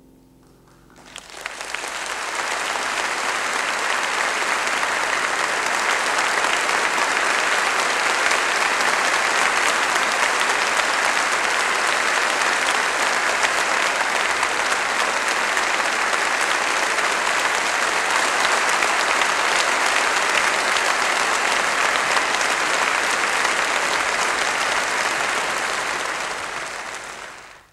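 Audience applauding, breaking out about a second in as the last piano notes die away and then holding steady and dense.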